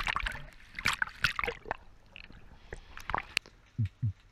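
Water sloshing, splashing and gurgling around a camera passing from the choppy sea surface to underwater, with irregular sharp clicks and splashes.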